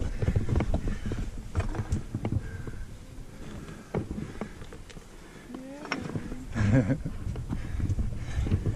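Hands and boots knocking and scraping on rock during a scramble, a run of sharp clicks and knocks. A person's voice sounds briefly about six to seven seconds in.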